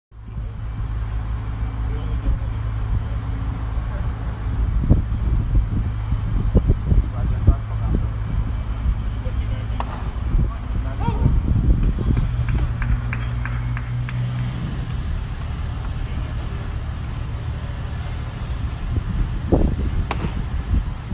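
Open-air ballpark sound heard from the stands: a steady low hum throughout, with scattered voices of nearby spectators and a few short knocks, one sharp knock near the end.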